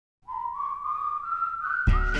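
Whistled melody opening a pop song: a single clear line climbing in small steps. Just before the end a band with a steady drum beat comes in under it.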